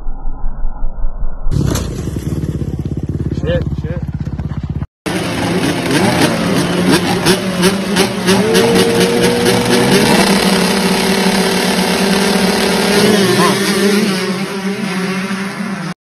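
Dirt bike engines running and revving through several short clips in a row, with a brief dropout about five seconds in; in the last part several bikes run together, one holding a steady high note for a couple of seconds.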